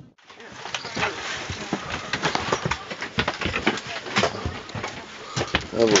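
A busy clatter of irregular knocks and clicks, with people talking in the background.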